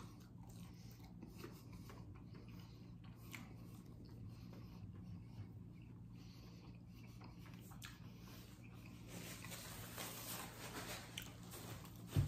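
Faint chewing of a breaded chicken nugget with small wet mouth clicks, a little busier near the end, over a low steady hum.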